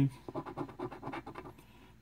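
A coin scraping the silver coating off a scratch-off lottery ticket in quick, repeated short strokes, trailing off near the end.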